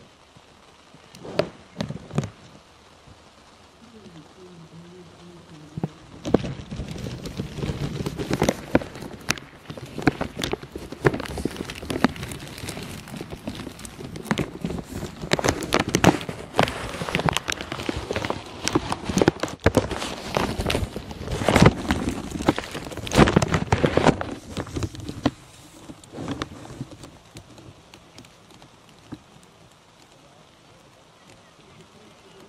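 Runners' footsteps crunching and slapping on a gravel path, an irregular run of steps that grows louder about six seconds in and fades near the end.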